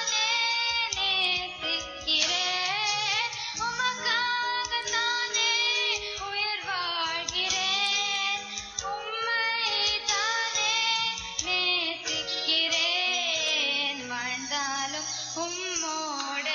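A young girl's solo voice singing a Tamil devotional song into a microphone, with held, wavering notes and gliding runs over instrumental backing music.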